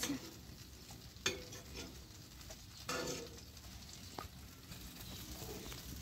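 Tomatoes and chile sizzling faintly in oil in a frying pan while a spoon scoops them out, with two sharp spoon knocks, about a second in and near the middle.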